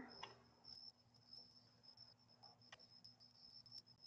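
Near silence with the faint, steady high trill of crickets, and a couple of faint clicks in the second half.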